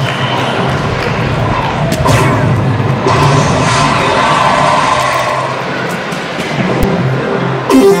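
DARTSLIVE soft-tip dart machine's electronic sound effects: a swooshing bull-hit effect about two seconds in as the third dart lands in the bull, then the machine's hat-trick award jingle for three bulls in the round.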